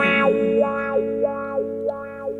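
Electric guitar played through an effects pedal, holding a chord that rings on with a regular warble about three times a second and slowly fades.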